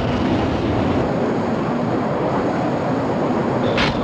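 A loud, steady rumble from an animated explosion sound effect, with a brief sharp hit near the end.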